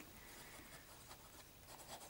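Faint scratching of a broad 18K-gold fountain pen nib writing on smooth paper, a few light pen strokes.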